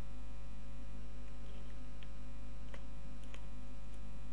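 Steady electrical mains hum in the recording, with three faint mouse clicks about two to three and a half seconds in.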